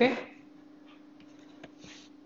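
The end of a spoken "okay" at the very start, then a quiet background with a faint steady hum and two faint ticks near the end.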